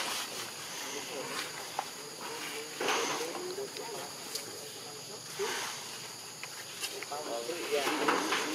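Indistinct voices in the background, coming and going in short phrases, over a steady high-pitched insect buzz.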